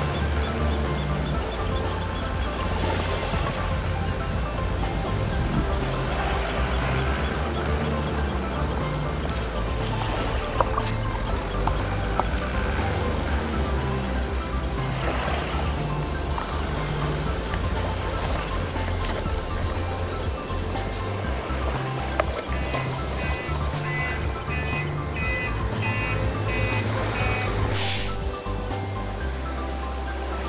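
Background music with a bass line that steps from note to note. For a few seconds near the end, a high, repeating melody figure comes in.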